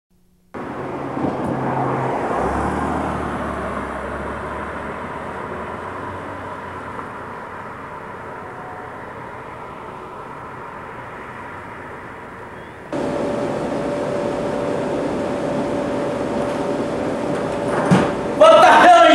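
Steady background rumble and hiss with a few low held hums, fading slowly, then an abrupt cut about 13 seconds in to a louder, steady hum with one faint held tone.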